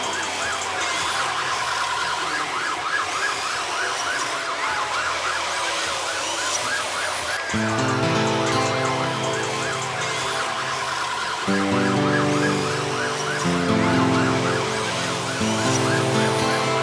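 Electronic police-style siren in a fast yelp, wavering up and down about four times a second, over club music. The music's bass and chords come in strongly about halfway through.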